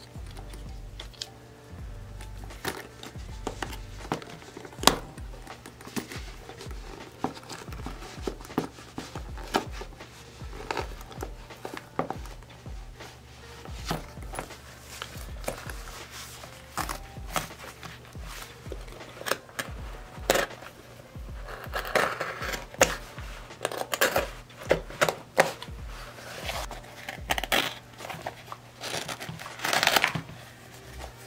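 A small hand blade cutting and tearing through a cheap rubber duck boot: irregular snips, cracks and tearing as the rubber shell, upper and foam lining are sliced apart, busier past the twenty-second mark. Background music runs underneath.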